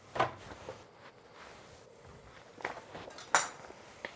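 A few short knocks and clinks of a metal spoon against a glass mixing bowl of raw meatball mixture, one shortly after the start and two near the end, the last the loudest.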